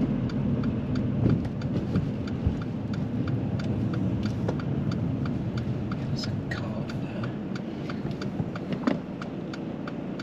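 Car's turn indicator ticking steadily, about three ticks a second, over the low hum of the engine and tyres inside the cabin.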